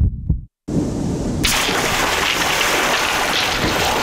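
Two short low thumps, then after a brief silence a steady rushing splash of water that swells to full loudness about a second and a half in: a commercial's sound effect of water bursting around a glass soda bottle.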